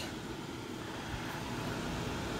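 Steady whirring noise of the ozone test rig's equipment running: the power supply's cooling fan and the oxygen concentrator feeding oxygen to the electrodes.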